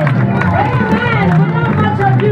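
A congregation praising God aloud all at once: many voices overlapping in a loud, continuous babble of shouted praise, with some clapping, over sustained keyboard chords.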